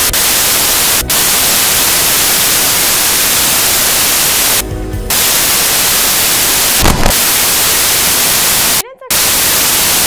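Loud, steady hiss of static filling the soundtrack, cut by short dropouts about a second in, near the middle and about a second before the end, with a brief louder crackle about two-thirds of the way through.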